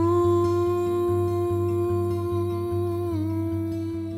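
A man's voice holding one long wordless note over fingerpicked acoustic guitar; the note scoops up at its start and dips slightly in pitch about three seconds in.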